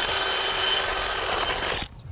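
Cordless drill with a spade bit boring into the rotten, soft wood of a tree trunk. It runs steadily and cuts off abruptly just before the end.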